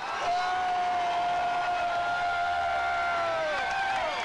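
One long sustained high note in a live blues performance, held for about three and a half seconds and sagging in pitch as it dies away, with little else under it.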